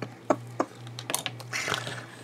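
A few light taps and clicks of craft tools being handled on a cutting mat: the pencil is set down and a metal ruler is picked up, over a steady low hum.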